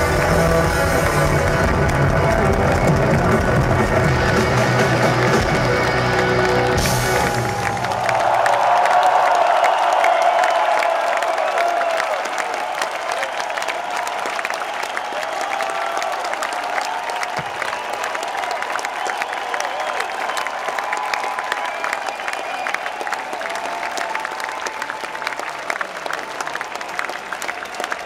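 Live rock band playing its closing bars, the full band with its bass dropping out about eight seconds in. After that a large concert crowd cheers and applauds while the music fades.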